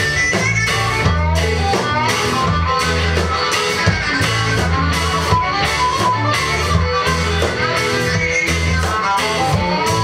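A rock band playing live, with electric guitars over a drum kit, at a steady loud level.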